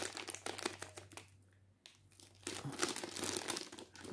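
Clear plastic bag crinkling as it is handled and turned over, with a lull of about a second in the middle.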